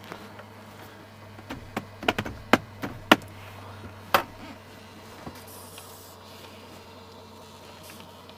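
Digital tachograph printer in a lorry cab printing out a 24-hour report: a steady low hum with about seven sharp clicks in the first half.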